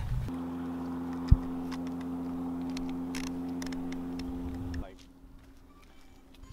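A steady motor hum made of several even tones, with one sharp click about a second in. The hum cuts off suddenly near the end.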